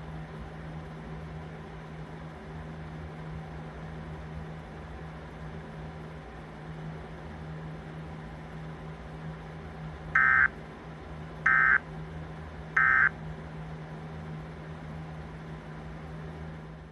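Emergency Alert System end-of-message data tones: three short, loud bursts of digital warbling about ten seconds in, roughly a second and a bit apart, marking the close of the alert. A steady low hum from the TV runs underneath.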